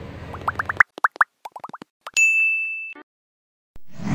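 Edited-in cartoon sound effects: a quick run of about a dozen short bloops, each rising in pitch. These are followed by a single bright ding that rings for under a second and then cuts off.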